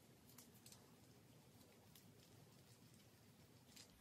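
Near silence, with a few faint clicks from a microneedle dermaroller being rolled over the skin of the arm.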